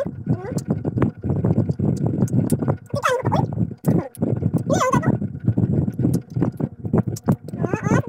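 People's voices making wordless, drawn-out exclamations at the sourness of raw green mango, with rising and falling cries about three seconds in, near five seconds and near the end, over chewing.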